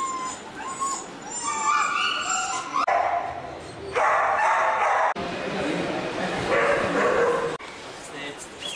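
Dogs whimpering and yelping while being held down and injected at a vaccination camp, with people's voices around them. The sound is high and wavering at first, and breaks off abruptly a few times.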